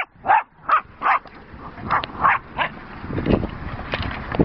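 Jack Russell terrier barking during play: a run of about seven short, high-pitched barks in quick succession, with a brief gap in the middle.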